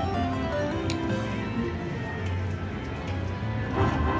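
Aristocrat Timber Wolf slot machine playing its electronic game music during a spin. Near the end a louder, fuller fanfare starts as the Wheel Feature bonus triggers.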